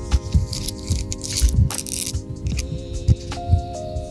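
Background music with sustained held tones over a low, pulsing beat. A brief rustling noise sounds between about half a second and two seconds in.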